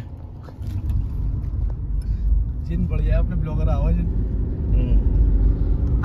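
Low, steady rumble of a car's engine and tyres heard from inside the moving car's cabin, starting a little under a second in. A man's voice is heard briefly in the middle.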